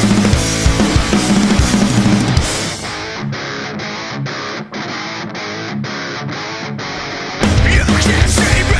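Rock band playing live: electric guitars, bass and drums together, then about three seconds in the bass and drums drop out, leaving electric guitar chords struck about twice a second. Shortly before the end the full band comes back in loud.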